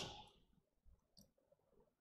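Near silence with one faint, short computer-mouse click a little past halfway, advancing a presentation slide.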